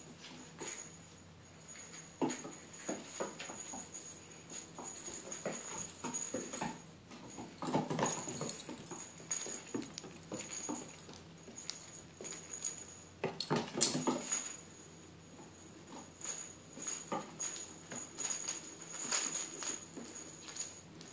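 A small bell on a toy hung from the ceiling jingles again and again as a Shetland Sheepdog puppy grabs, tugs and shakes it. Its paws patter and scrabble on a wooden floor, with scattered knocks; the sharpest knock comes about two-thirds of the way through.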